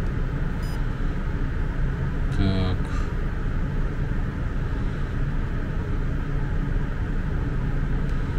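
Steady low background rumble, with a short hummed voice sound about two and a half seconds in and a faint click before it.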